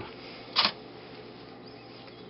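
A single short mechanical click about half a second in, from a relay on the RFID board switching as the card is read.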